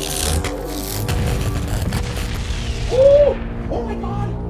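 Explosions and rapid gunfire rumbling and crackling over background music, beginning with a sharp blast. About three seconds in comes a short, loud rising-and-falling cry.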